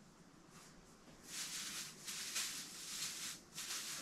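Rustling of an artificial Christmas tree's plastic branches being bent open and fluffed by hand. It comes in several short bursts after about a second of near quiet.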